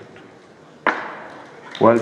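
An auctioneer's gavel strikes once, about a second in: a single sharp crack with a short ringing tail. It knocks the lot down as sold.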